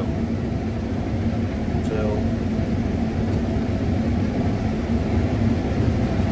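Steady drone of a combine harvester running through standing corn, heard from inside its cab.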